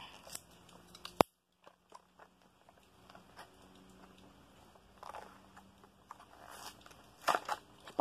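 Plastic blister packaging of a die-cast toy car being worked open by hand: scattered crackles and clicks, with one sharp click about a second in.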